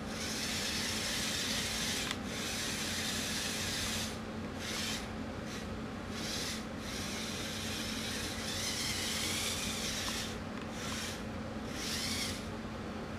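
Small six-wheel-drive robot's electric drive motors running in spurts, a hissing, rubbing sound that cuts out briefly several times as it is steered. About two-thirds of the way through, a faint whine rises and falls as the motors change speed.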